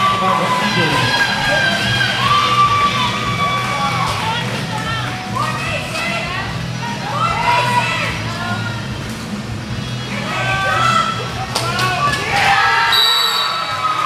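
Overlapping shouts and cheers from roller derby skaters and spectators, with music underneath. A short, steady, high referee's whistle blast sounds near the end.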